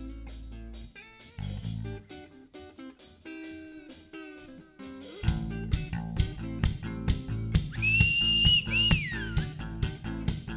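Rock band playing live: an electric guitar and bass intro, with the drum kit coming in about halfway on a steady beat. Near the end a high whistle holds for about a second and a half, bends, then slides down.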